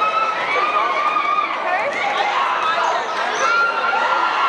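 Basketball spectators in a school gym talking and calling out, many voices overlapping at a steady level.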